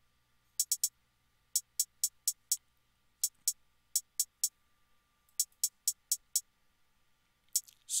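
Programmed trap-style hi-hat playing on its own: short, crisp ticks in quick runs and rolls, with gaps of about a second between phrases.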